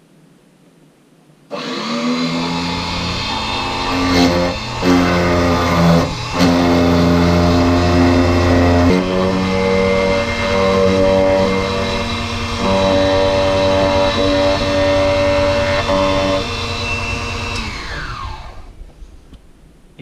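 Defu 368A vertical key cutting machine's motor and end-mill cutter running while milling a car key blade. It switches on about a second and a half in with a loud, steady whine of several pitches that shift as the cutter is fed along the blade. Near the end it winds down with falling pitch as the machine is switched off.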